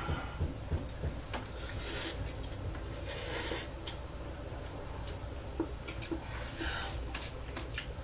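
Two people eating instant ramen noodles from paper cups with forks: two brief slurps, about two seconds in and again about a second and a half later, amid light clicks and scrapes of the forks against the cups.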